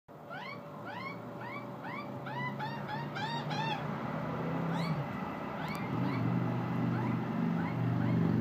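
Juvenile Australian magpie begging for food: a fast run of rising-and-falling squawks, about three a second, that thins out after about four seconds. A low hum grows beneath the calls in the second half.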